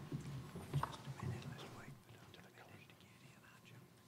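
Faint sound of a hall full of standing people: whispered voices, shuffling and a few light knocks, dying down after about two seconds.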